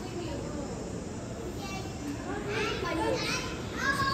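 Background chatter of children and adults, faint at first, with children's voices growing clearer after about two and a half seconds.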